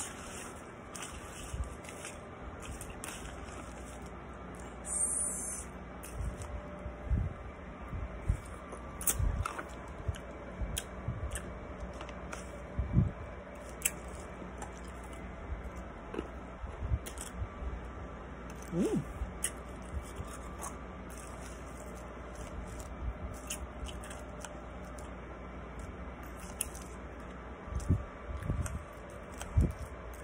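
A person biting and crunching ice close to the microphone, with irregular sharp crunches and chewing between them.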